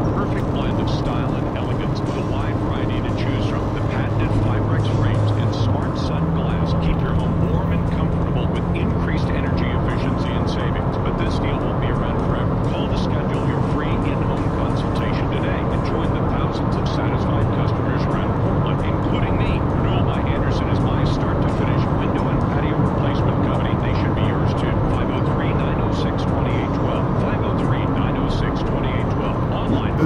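Steady road and engine drone inside a moving car's cabin, its low engine note shifting about six seconds in, with an indistinct voice from the car radio underneath.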